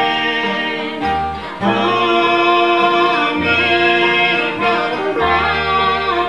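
Live acoustic bluegrass band: a woman sings held lead notes over strummed acoustic guitars and a plucked upright bass.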